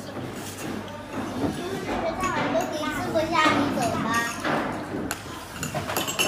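Indistinct chatter of several people talking at a meal table, with a light clink of tableware near the end.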